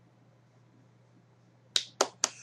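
Near silence with a faint steady low hum, then a single sharp click near the end.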